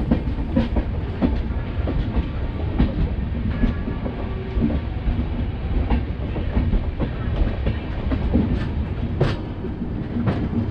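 Express passenger train running at speed, heard from a coach doorway: a steady rumble of wheels on rails with irregular clicks as the wheels cross rail joints, and one sharper click near the end.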